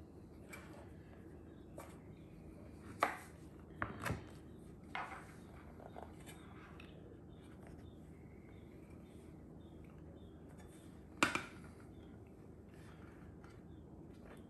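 Metal bench scraper trimming pie dough at the rim of a pie plate. Its blade gives a few light clicks and knocks against the plate: a cluster between about three and five seconds in, and one sharper knock about eleven seconds in, over faint room tone.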